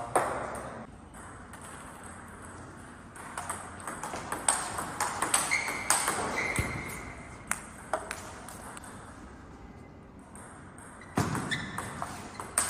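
Table tennis rally: the ball clicks off the players' bats and bounces on the table in quick runs of sharp taps. There are a few quieter pauses between points.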